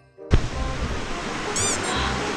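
Steady rushing outdoor noise cuts in a moment after a music track ends, with a brief, rapid, high bird chirp about three quarters of the way in.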